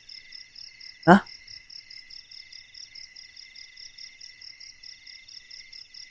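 Night crickets chirring steadily in several high-pitched bands, one of them a fast even pulse. About a second in, a single short voice sound rises in pitch and is the loudest thing heard.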